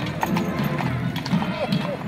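Horse's hooves clip-clopping on the wet street as a horse-drawn carriage passes, over crowd voices and music.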